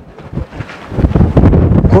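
Wind buffeting a clip-on microphone: a low rumble that grows loud about a second in.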